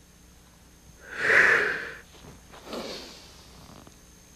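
A man's loud breath, about a second long, about a second in, from the effort of a floor exercise, then a fainter, shorter breath.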